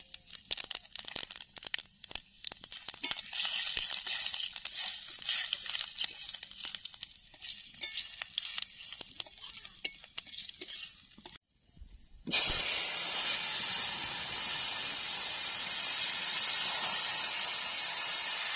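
Whole spice seeds crackling and popping in hot oil in a wok, with a spatula stirring. After a short drop-out about two-thirds of the way through, a steady, louder sizzle follows as spinach and potato pieces fry in the wok.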